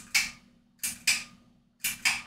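Short, sharp clicks in three pairs, each pair about a second apart.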